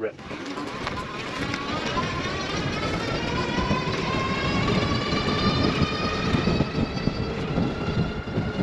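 Electric bike's motor whining under hard acceleration, its pitch rising steadily as speed builds, over a low rushing noise.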